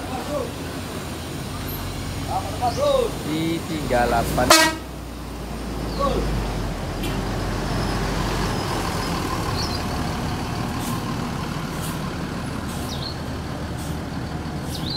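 A large diesel coach's engine running low and steady as the bus creeps past at walking pace, with a single short vehicle horn toot about four and a half seconds in. Voices are heard in the first few seconds.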